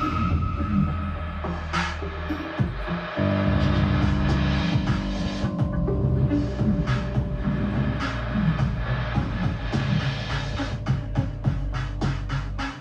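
Live electronic music played on synthesizers: a sustained low bass with layered held tones, and sharp clicks that come thicker near the end.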